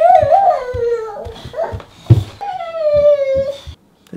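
A toddler's wordless voice: two long, wavering calls, the second sliding slightly down in pitch, over soft thumps of her hands and feet on carpeted stairs as she climbs.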